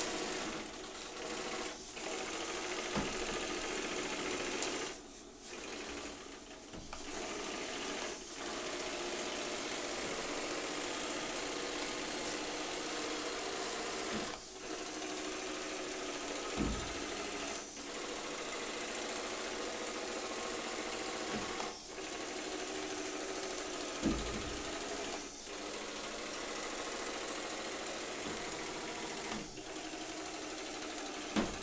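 A 5cc two-cylinder double-acting oscillating (wobbler) steam engine running steadily at speed, a fast, even mechanical clatter. The sound dips briefly several times, and a couple of dull knocks come in the second half.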